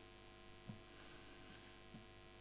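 Near silence with a steady, faint electrical hum, broken by two faint soft thumps, one early and one near the end.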